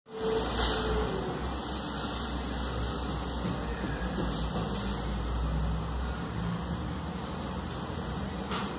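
A steady low rumble under a background hiss, its lowest part easing a little about six seconds in.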